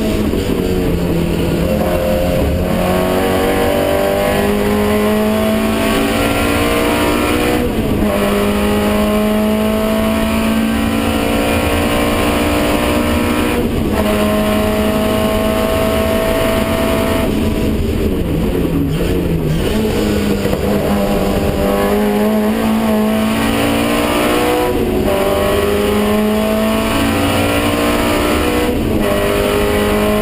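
Racing car engine heard from inside the cockpit under hard acceleration, rising in pitch through the gears, with upshifts about 2.5, 8 and 14 seconds in. Around the middle it brakes and blips down through the gears for a corner, then pulls hard again with two more upshifts near the end.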